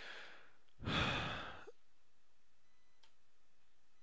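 A man's long breath out near the microphone, a sigh lasting about a second, starting about a second in.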